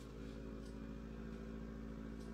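Vibration motor of a cordless heated back-brace massager running in its steady-vibration mode: a low, even electric hum that holds one pitch.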